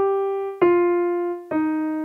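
Yamaha Arius digital piano playing single notes one at a time in a slow descending line: a held G, then F struck about half a second in, then E-flat about three quarters of the way through, each note ringing on until the next.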